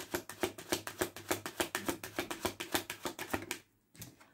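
A deck of oracle cards being shuffled by hand: a quick, even run of card flicks, about eight a second, that stops about three and a half seconds in.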